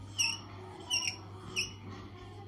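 Whiteboard marker squeaking against the board as a wavy outline is drawn: three short high squeaks, about two-thirds of a second apart, over a faint steady low hum.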